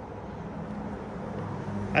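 A vehicle crossing the road bridge overhead: steady tyre and engine noise with a low hum, slowly growing louder.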